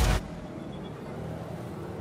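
Background music cuts off just after the start, leaving the steady noise of road traffic, cars and motorbikes on a busy street.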